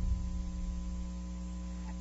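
Steady electrical mains hum on the race-call audio track, with no other distinct sound.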